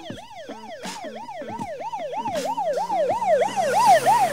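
Siren in a fast yelp, the pitch rising and falling about three times a second and growing louder toward the end.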